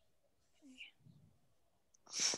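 Near silence, with a faint, indistinct murmur of a voice about halfway through.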